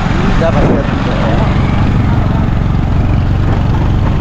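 Motorcycle engine running steadily under way, heard from on the bike itself.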